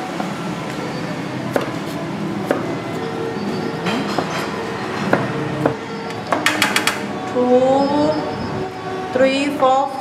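Background voices and music in a room, with scattered sharp knocks of a cleaver on a wooden cutting board. Near the end there is a quick run of clinks from a spoon on a metal tray and bowl.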